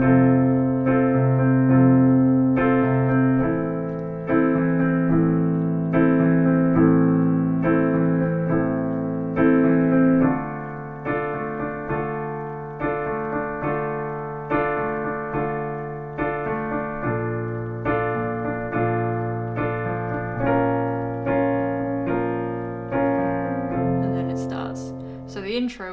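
Piano playing one round of a chord progression in F major (F, A minor, D minor, B-flat major seven, B-flat minor), with the left hand on open fifths and the right hand striking the chords again and again in a steady rhythm, the chord changing every several seconds.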